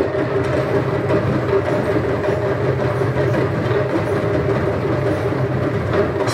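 A massed ensemble of hand drums played in a fast, unbroken roll at an even, steady loudness.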